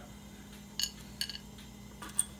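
Faint light clicks of chocolate chips being picked from a small ceramic ramekin and set onto a china plate: one click a little under a second in, then a quick cluster of two or three more.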